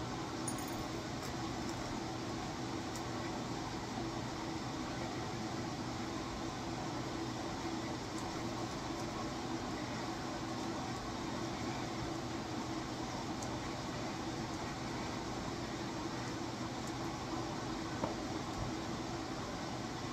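Steady low hum and hiss of room noise, with a few faint small clicks.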